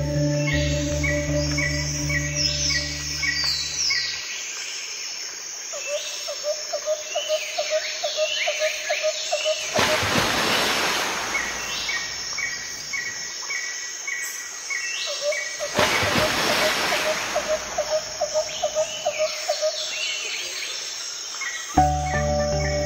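Recorded nature ambience of repeated bird chirps and a pulsing insect-like trill, with two swells of rushing noise about ten and sixteen seconds in. A low sustained music pad fades out in the first few seconds.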